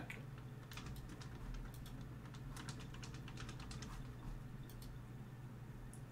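Faint, irregular tapping of computer keyboard keys being typed, several taps a second, over a low steady hum.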